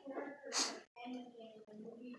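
Faint, distant speech in a large room, with a short sharp hiss about half a second in and a brief cut-out of all sound just before one second.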